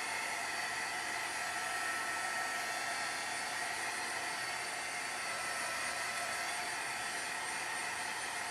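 Handheld craft heat tool blowing steadily to dry wet watercolor paint: an even rushing whir with a faint steady whine.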